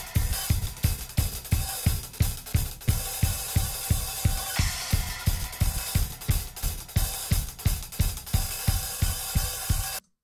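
Multitracked acoustic drum kit recording playing a four-bar groove of kick, snare, hi-hat and cymbals, with the kick hits evenly spaced. The hits have been manually warped onto the beat, and playback cuts off sharply at the end.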